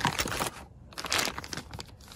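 Clear plastic packaging bag crinkling and rustling in irregular bursts as it is handled and drawn out of a cardboard box.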